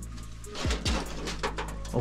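Background music: a steady low drone with two deep falling bass hits close together a little before the one-second mark, over light ticking percussion.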